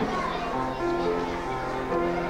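Music: a group of children singing together in held notes that step up and down in pitch.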